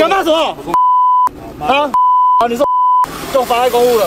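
A censor bleep sounding three times, each a single steady tone lasting about half a second or less, blanking out the words beneath it in a heated argument between men's voices; the bleeps mask a profanity.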